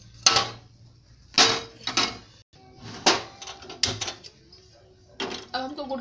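A series of separate metal cookware clanks and scrapes: a kadhai knocking against a steel plate as roasted sesame seeds are tipped out, and a metal pot being handled and set on a gas stove.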